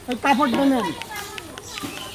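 Speech: a person talking for about the first second, then a lull.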